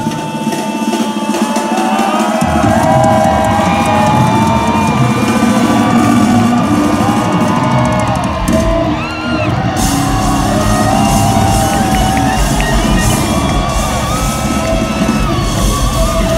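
Live rock band playing an instrumental stretch through a concert PA system, with loud distorted guitars and drums. The bass drops out for about two seconds near the start, then the full band comes back in.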